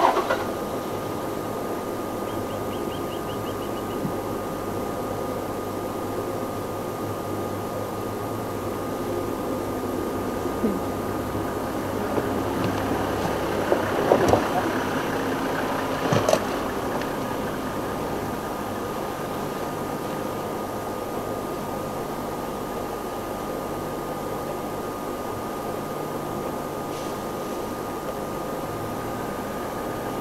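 Safari game-drive vehicle's engine idling steadily, with a thin steady high tone over it. A cluster of louder rustles and knocks comes about halfway through.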